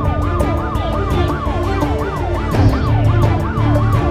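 An electronic siren sweeps quickly up and down, about two to three times a second, alongside a steady tone. It is mixed over a music bed with a regular drum beat and heavy bass.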